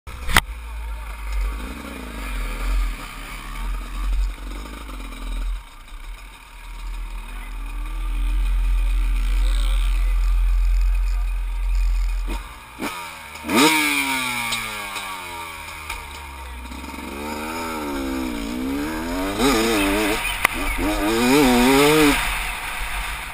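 Dirt bike engine running under a heavy low rumble, then revved hard about 13 seconds in as the bike pulls away. Its pitch climbs and falls repeatedly with throttle and gear changes.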